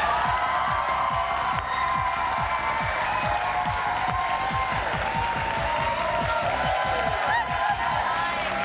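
Studio audience applauding and cheering over entrance music with a steady drum beat of about three strokes a second; a few whoops rise near the end.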